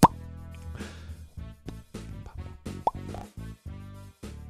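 A loud mouth pop with a quick upward pitch at the very start, and a smaller one about three seconds in, over upbeat background music with guitar.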